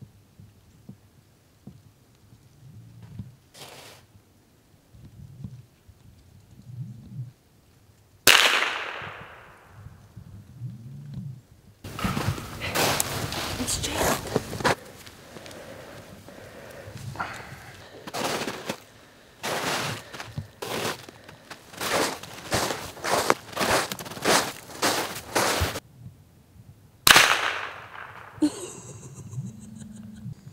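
.22 rifle fired twice, a sharp crack with a short trailing echo about 8 seconds in and again near the end. Between the shots, a long run of crunching steps in snow, evenly paced in the later part.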